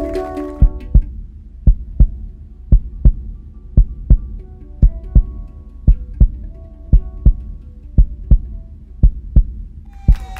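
A recorded heartbeat played as part of the dance music: a steady double thump, lub-dub, about once a second, with faint sustained musical tones underneath.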